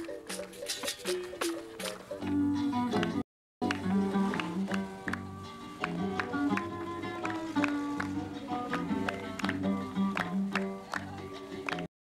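Capoeira music: a pandeiro's jingles and slaps over sung, held notes. The sound cuts out completely for a moment about a third of the way in.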